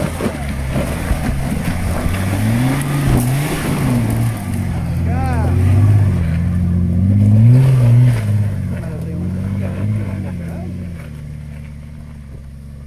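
4x4 SUV engine revving up and down as it crawls over rocks on a dirt trail. It is loudest midway as it passes close, then fades as it drives away.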